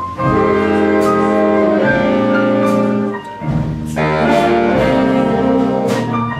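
Jazz big band playing: the horn section holds loud sustained chords over piano and double bass. The full band comes in just after the start, drops back briefly after about three seconds, and hits a new chord about four seconds in.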